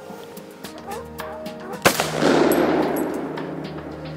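A single hunting-rifle shot about two seconds in, followed by a long rolling echo that dies away over a second or so.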